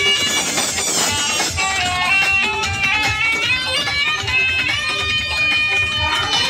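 Loud music played through a DJ sound system's speaker stacks: an instrumental melody moving in stepped notes over a low, thudding beat.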